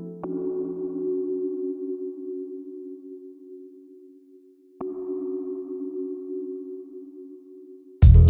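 Quiet ambient music: a held, ringing chord sounded near the start and again about halfway through, each time slowly fading.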